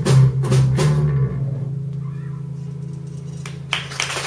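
Live band closing a song: acoustic guitar, bass guitar and drums play a few last accented chords, then the final chord rings out and slowly fades. Clapping starts near the end.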